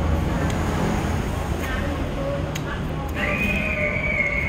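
Indistinct background voices over a steady low din. About three seconds in, a high, steady tone comes in and holds.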